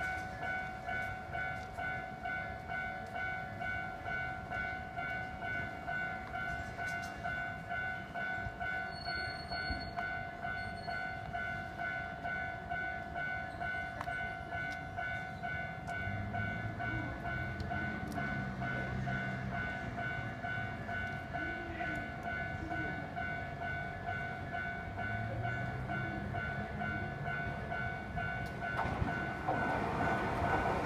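Electronic level-crossing alarm at a Japanese railway station crossing, ringing its repeated two-tone clang in an even rhythm while the crossing is closed for an approaching train. Near the end the noise of an arriving train builds under it.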